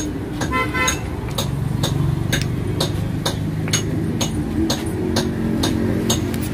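A short vehicle horn toot about half a second in, over a steady low hum of traffic, with sharp clicks repeating evenly about two to three times a second.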